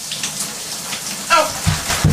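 Shower water running steadily, spraying into the tub, with a low thump near the end.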